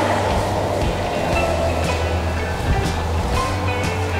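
Background music with a steady beat over held bass notes.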